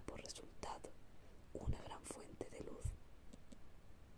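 Soft whispered speech close to the microphone, breathy and hissy, with two low thumps about one and a half and three seconds in.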